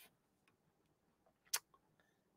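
A single sharp click of a computer mouse about one and a half seconds in, with a fainter tick just after, against near silence.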